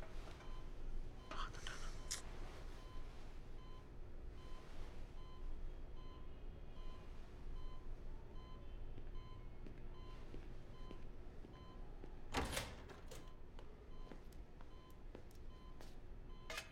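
Hospital bedside patient monitor beeping: faint short beeps repeating at an even, steady rate. A single thump about twelve and a half seconds in.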